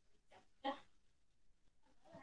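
Near silence, broken once about two-thirds of a second in by a short, faint vocal sound.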